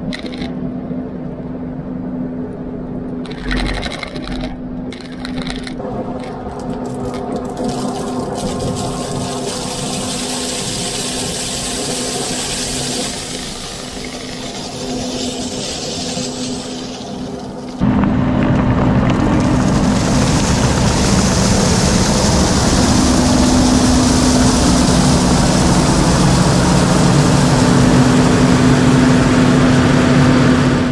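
Kubota SVL97 compact track loader's diesel engine running steadily, with a rushing hiss in the middle as crushed stone pours out of its bucket. About 18 seconds in the sound jumps suddenly louder and fuller as the loader's engine and tracks are heard up close.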